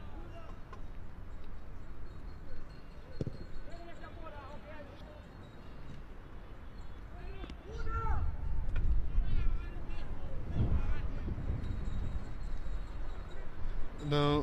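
Football pitch ambience: players' distant shouts and calls, with a single ball-kick thump about three seconds in. From about halfway through, a louder low rumble comes in under the shouts.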